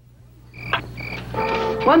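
Short, high-pitched chirping calls repeated several times, starting about half a second in after a brief silence: an animal calling, tagged as frog-like.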